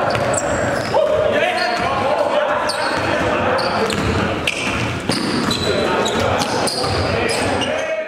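The echoing live sound of an indoor basketball game: a ball being dribbled, sneakers squeaking in short high chirps on the gym floor, and players' voices, all in a large hall.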